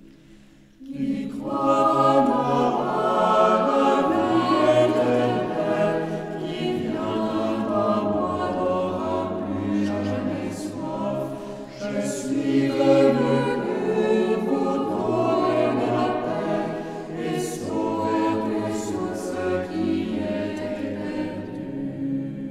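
Mixed choir of nuns and friars singing a French hymn in parts, entering together about a second in after a brief quiet, with sustained chords that move from note to note.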